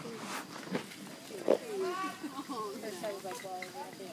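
A few sharp firework pops, the loudest about a second and a half in, followed by people's voices in the background from about two seconds on.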